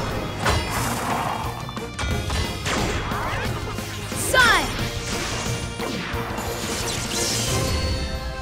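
Cartoon action sound effects over background music: crashes and whacks, with a falling swoop about four seconds in that is the loudest moment.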